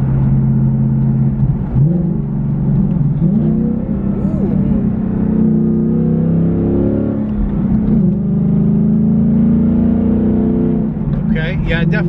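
The 5.0 V8 of a 2024 Ford Mustang GT, heard from inside the cabin through a Corsa cat-back exhaust with X-pipe, its valves set to the loud mode. The deep exhaust note climbs in pitch under acceleration and drops back a few times, then holds steady near the end.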